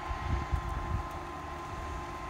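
Wind buffeting a phone microphone on an open chairlift ride, a few low rumbling gusts in the first second, over a steady thin high hum.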